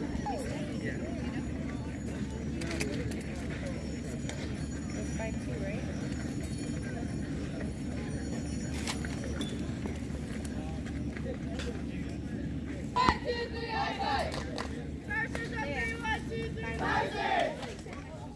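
Distant talk and calls of softball players and spectators over a steady low rumble. A sharp knock comes about two-thirds of the way through, then louder voices call out near the end.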